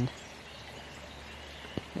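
Quiet, steady rush of a flowing stream, with a faint high thin tone above it.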